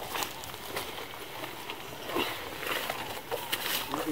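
Leaves and stems of dense field plants rustling and crackling as a man works and moves through them, with scattered small snaps over a steady outdoor background.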